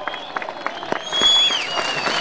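Crowd applauding: scattered claps at first, swelling into dense applause about a second in, with a high whistle sounding over it.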